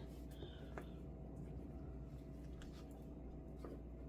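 Faint soft handling sounds of filled yeast dough being twisted by hand on a silicone baking mat: a few light ticks over a steady low room hum.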